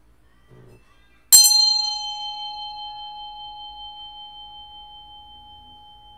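A bell struck once, its clear ringing tone slowly fading with a gentle wavering over several seconds.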